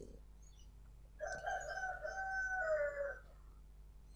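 A rooster crowing once, a single call about two seconds long that drops in pitch at the end.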